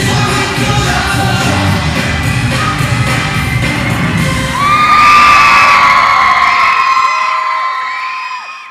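Live pop music on a concert stage with a crowd cheering and screaming over it. About halfway in a long held high note rises above the cheers and the music gets louder; near the end the beat stops and the sound begins to fade.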